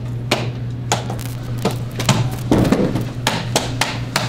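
Repeated sharp taps and knocks, about a dozen at uneven intervals, from hands working at a metal elevator door and its frame, over a steady low hum.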